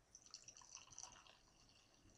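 Faint dripping and trickling of stout being poured from a bottle into a glass, a scatter of small ticks that fades out about halfway through.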